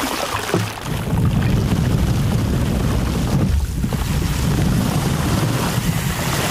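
Artificial rain: a fine water spray falling directly onto a plastic-wrapped microphone. It makes a dense, steady hiss over a heavy low rumble, and eases briefly a little past halfway.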